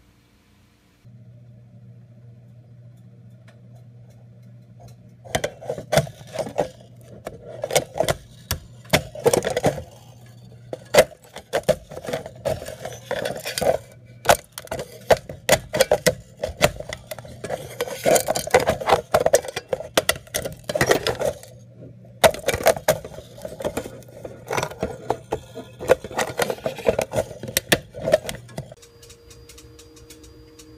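Microwave oven running with a steady low hum from about a second in, shutting off shortly before the end. Over most of the run there are irregular clicks and rattles.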